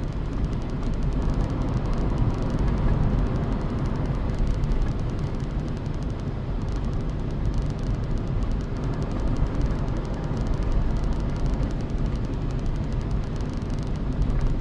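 Steady rumble of a moving car's tyres and engine, heard from inside the cabin.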